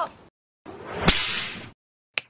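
Whoosh transition sound effect that swells to a sharp whip-like crack about a second in, then fades out.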